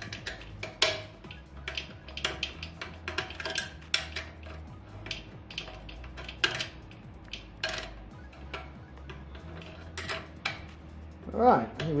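Steel combination wrench clinking and ticking against the bolts and metal burn pot as the burn-pot bolts are tightened down, an irregular run of sharp metal clicks.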